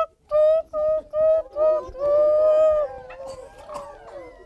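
Voices tooting like an elephant: four short high "toots" and then one long held "toooot", followed by a scatter of quieter overlapping toots from children.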